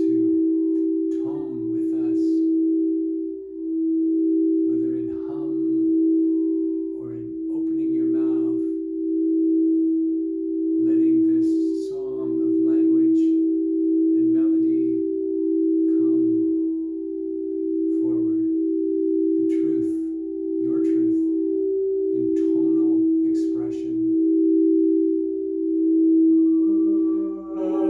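Two 432 Hz-tuned crystal singing bowls being rimmed with mallets, ringing as two steady tones close together in pitch that swell and ease every couple of seconds. Short, soft low vocal sounds come and go over the tones.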